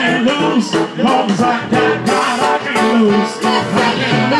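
Live band playing with a steady beat while a woman sings lead through a microphone and PA.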